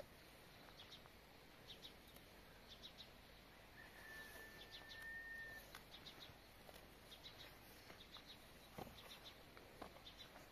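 Faint small birds chirping in short, repeated high calls, with one long steady whistled note lasting nearly two seconds about four seconds in. A couple of soft clicks near the end.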